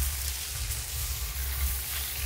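Steady hiss with a fluttering low rumble underneath.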